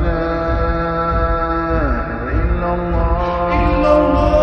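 Arabic nasheed: layered voices chanting long held notes that slide down in pitch about two seconds in, then hold again, over a low pulsing beat.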